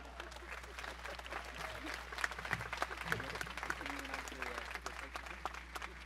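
Audience applauding: many separate hand claps, sparse enough that single claps stand out, over a steady low hum.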